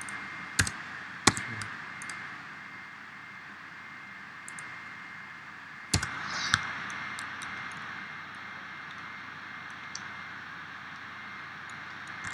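Scattered sharp clicks of a computer mouse and keyboard: two in the first second and a half, two more around the middle, and a few fainter ticks. Underneath is a steady hiss with a faint high tone.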